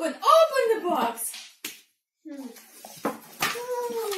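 A toddler's excited voice and a woman's voice. A few light knocks and handling noises follow as a small box is opened and picture cards are taken out.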